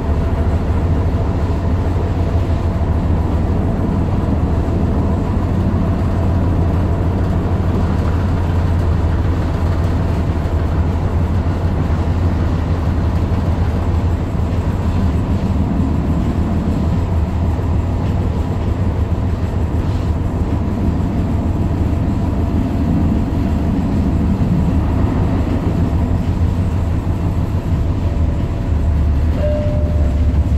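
Tyne and Wear Metrocar heard from inside the passenger saloon while running between stations: a steady, loud low rumble of the wheels and running gear, with a faint steady whine above it.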